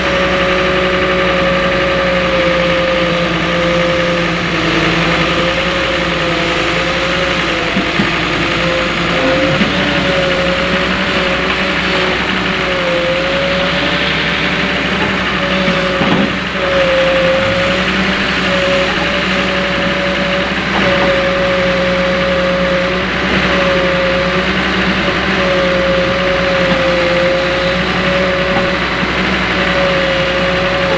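Volvo EW130 wheeled excavator's diesel engine running steadily while the machine digs and loads, with a whine that wavers slightly in pitch throughout and a short dip in level about halfway.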